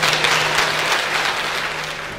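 Audience applauding at the end of a talk, the clapping slowly dying away.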